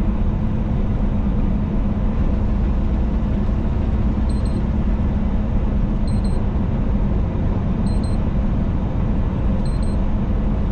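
Steady drone of a semi-truck cab at highway speed, engine and road noise with a heavy low rumble. A faint high beep repeats about every two seconds from about four seconds in.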